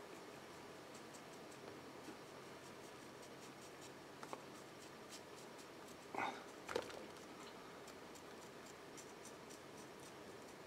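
Faint scratching of a paintbrush dry-brushing and dabbing paint onto a miniature's gate, over quiet room tone. Two short, soft sounds come a little after six seconds.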